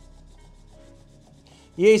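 Faint scratching of a pencil drawing a mark on plywood, its tip guided by the marking notch in a tape measure's hook.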